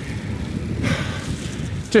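A hard, breathy exhale from a tired cyclist on a steep climb about a second in, over a steady low rumble of wind on the microphone.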